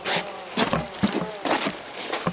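ATV engine buzzing as it crawls over a rocky, log-strewn trail, its revs rising and falling. Several sudden louder bursts of noise come over it.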